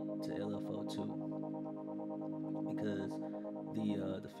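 Sustained synth pad chord from the Air Instruments Loom soft synth's 'Basic Majesty' preset, played through a low-pass filter driven by an envelope that gives it a slow breathing swell.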